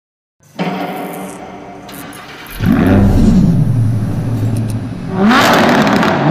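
A car engine runs steadily, then about two and a half seconds in the revs rise and fall. Near the end the engine accelerates hard, its pitch climbing steeply.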